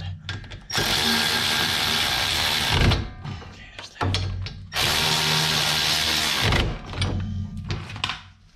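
Cordless electric ratchet running twice, about two seconds each time, about a second in and again near the middle, as it spins out the brake caliper's bolts.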